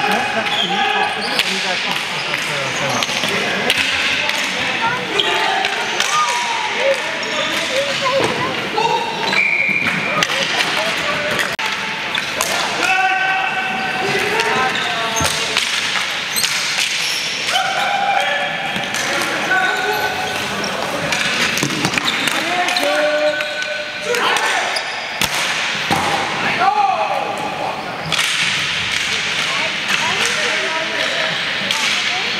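Ball hockey game play in an echoing indoor rink: sticks clacking and the ball knocking against sticks and boards again and again, with players shouting and calling to each other throughout.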